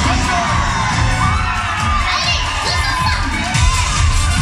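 Audience of children shouting and cheering, many high voices at once, over the show's music with its steady low beat.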